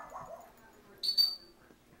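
Two small dogs tugging at a plush toy, with one short, high squeak about a second in.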